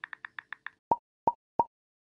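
Animated-title sound effects: a quick run of light typing clicks, about seven a second, then three sharp pops about a third of a second apart, timed to three on-screen icons appearing.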